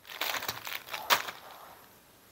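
Clear plastic bags crinkling as a stack of bagged phone cases is handled and set down on a table, with a sharp crackle about a second in.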